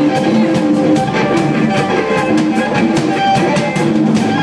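Lead guitar solo over a rock band with a drum kit, played live; the guitar holds sustained notes over a steady beat of drum and cymbal hits.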